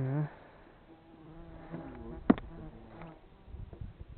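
An insect buzzing close to the microphone: a short, loud burst of wavering pitch at the very start, then a steadier hum from about a second and a half to three seconds in. One sharp click a little over two seconds in.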